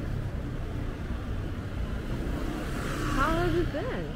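Night street ambience: a steady low rumble of traffic under a general city hubbub. A person's voice is heard briefly near the end.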